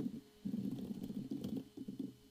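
Fast typing on a computer keyboard: a quick, uneven run of muffled keystrokes.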